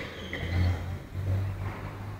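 A single person's cough at the very start, followed by a low hum that swells twice.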